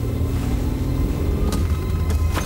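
Deep, steady rumble of a car driving at speed, engine and road noise, with a single sharp click about one and a half seconds in.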